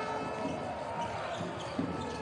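A basketball being dribbled on a hardwood court, over the steady background of an arena.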